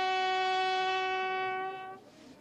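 A bugle call sounded for military funeral honours: one long note held steady that stops just before the end.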